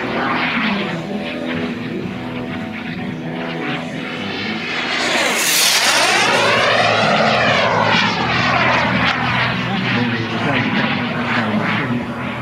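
Radio-controlled model jet with a tuned P180 gas turbine making a fast pass. Its turbine rush swells to a loud peak about five seconds in, sweeps up and then down in pitch as it goes by, and then fades as it flies away.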